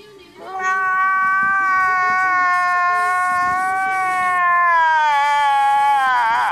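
A man wailing in a long, high-pitched cry. The note is held steady, then slides down in pitch near the end.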